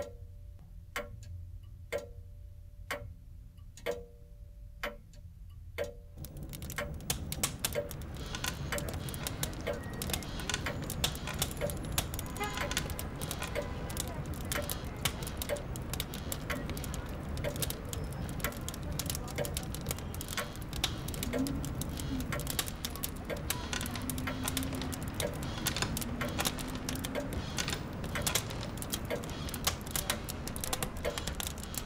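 A clock ticking about once a second, each tick with a short ring, for the first six seconds; then a dense layer of quick clicks and hiss takes over.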